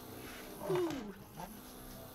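Stepper motor turning a 3D-printed robot-arm rotary base, driven by a Trinamic 2041 stepper driver in dual drive mode. Its quiet whine falls in pitch and then rises again as the motor runs.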